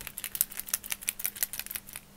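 Derwent paint pen being shaken, the mixing ball inside rattling in rapid clicks that stop just before the end.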